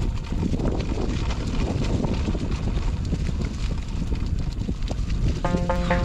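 Electric mountain bike rolling over a leaf-strewn gravel forest track: a low rumble with irregular rattling knocks from the bumps. Music with plucked notes comes in about five and a half seconds in.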